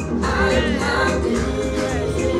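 Gospel song: a woman singing, her held notes wavering, over a backing track with a steady bass beat.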